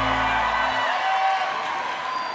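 Live band holding a sustained low closing chord that cuts off under a second in, leaving the crowd cheering.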